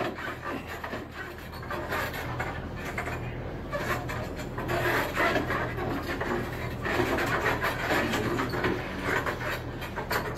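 Irregular rubbing and creaking of an arm-wrestling table under two men straining against each other in a locked arm-wrestling match.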